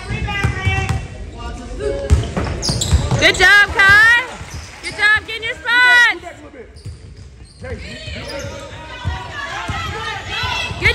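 A basketball bouncing on a hardwood gym floor, with short, high-pitched shouts ringing in the hall.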